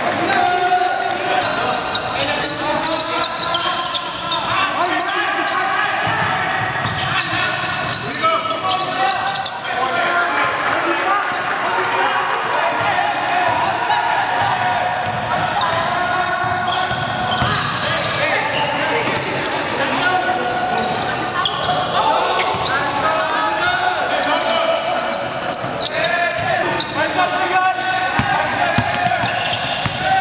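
Live court sound of an indoor basketball game: a basketball bouncing on a hardwood court as players dribble, under continuous overlapping calls and chatter from players and bench.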